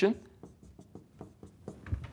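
Marker writing on a whiteboard: a run of short, faint scratching strokes and taps, ending with a low thump.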